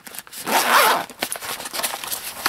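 Zipper on a soft fabric carrying case being pulled open in one continuous run of under a second, followed by a few light handling clicks.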